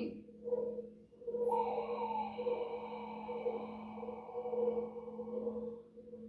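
Meditation audio playing in the room: a steady low drone of two held notes. About one and a half seconds in, a ringing tone with a sharp start comes in over it and slowly fades away before the end.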